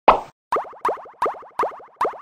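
Cartoon sound effect: a short pop, then a string of five falling-pitch “bloop” plops, about three a second, each trailing off in quick fading repeats like an echo.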